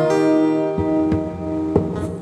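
Acoustic guitar played fingerstyle: a chord left ringing, with a few single notes plucked over it.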